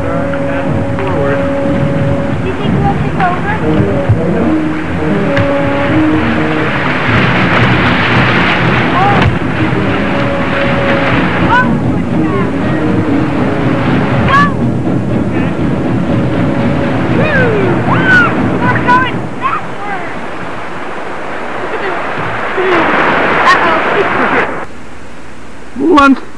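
Rushing whitewater and wind on the microphone as a canoe is paddled down fast river water, with short high voices now and then. The rush drops away suddenly near the end.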